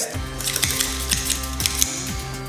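Background music with a steady bass line, over quick, irregular clicking of kitchen scissors snipping through raw meat.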